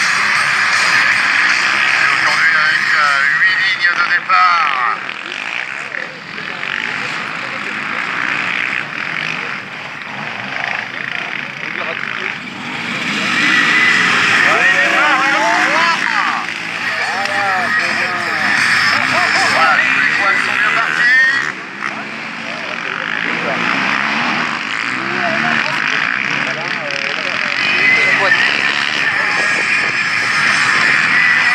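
Many racing quad engines running together at a start grid, revving up and down in pitch.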